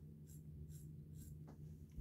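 Faint scratchy strokes of a stainless steel single-edge safety razor rubbed dry against beard stubble on the cheek, a few rasps a second, stopping shortly before the end.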